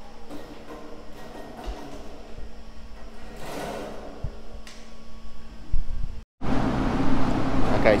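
Workshop sounds: a steady low hum with scattered clicks and knocks and a brief rushing swell. A short dropout, then a louder steady hum.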